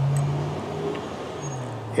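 A steady low hum with a faint hiss above it, easing off a little over the first second.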